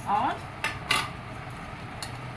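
Two quick metallic clinks against a stainless steel plate, about a quarter second apart near the middle.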